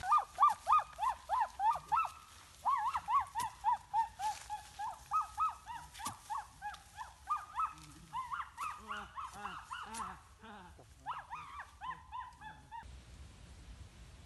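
Animal calls: rapid runs of short, arched notes, about four or five a second, in several bouts with short pauses. A lower, second voice joins around the middle, and the calling stops abruptly about a second before the end.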